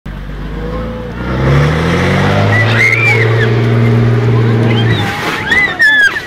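Coach bus's diesel engine revving up and holding at a steady high speed for several seconds, then dropping away about five seconds in, while bystanders shout over it.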